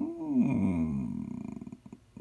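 A man's drawn-out wordless vocal sound, a thinking hum, falling slowly in pitch and trailing off into a creaky rasp.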